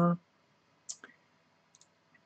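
The tail of a spoken word, then near quiet broken by a couple of faint short clicks about a second in and a few tiny ticks near the end.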